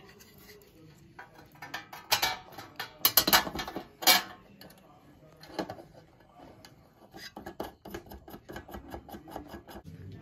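Metal clinks, knocks and scrapes as a steel sheet plate is held against the end of an electric pump motor and nuts are turned onto its bolts by hand. A few louder knocks come about two to four seconds in, then a run of light quick ticks near the end.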